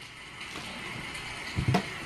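A quiet steady hiss, then two dull thuds near the end as a baby's hands slap the lid of a box.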